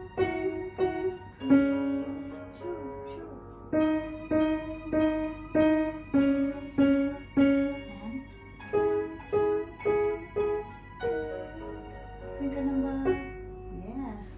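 Piano played at an easy, even pace of about two notes a second, a simple beginner's melody over a few lower notes. The phrase ends and the last notes die away about a second before the end.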